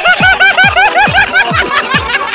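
A rapid run of high-pitched laughing, short pitched syllables in quick succession, over background music with a steady kick-drum beat about three times a second.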